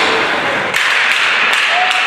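Ice hockey play on the rink: a steady haze of rink noise with several sharp taps starting a little under a second in, of sticks, puck and skates on the ice.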